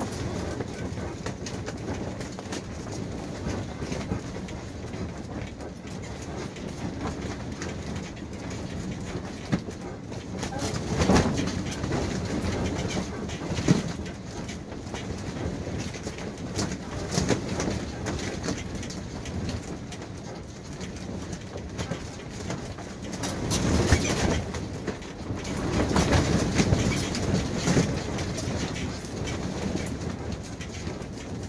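Strong wind buffeting a pop-up camper, heard from inside: a steady rush against the canvas walls with sharp flaps and knocks, swelling into heavier gusts about a third of the way in and again near the end.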